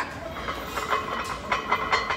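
Iron weight plates on a loaded barbell rattling and clinking against the bar sleeves as the lifter shifts under the bar, a rapid run of metallic clicks with a faint ring.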